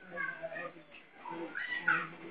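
A young man's voice singing softly in two short phrases, with a brief break about a second in.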